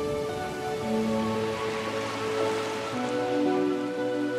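Slow background music with held notes, over a rain-like hiss that swells in the middle and fades near the end.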